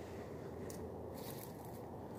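Faint crunching and scraping of footsteps on garden soil strewn with dry plant stalks, with a couple of soft clicks around the middle.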